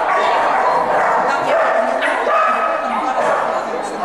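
A dog barking and yipping over people's voices.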